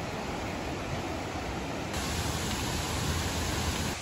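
A steady rushing noise with no distinct events, of the kind made by flowing water or wind.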